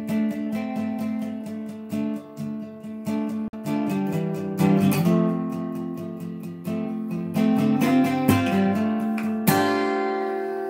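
Acoustic guitar with a capo playing a song intro, notes picked and strummed in a steady rhythm of about four strokes a second, with a harder strum near the end.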